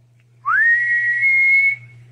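A single whistled note that slides up at the start and then holds steady for about a second and a quarter before stopping.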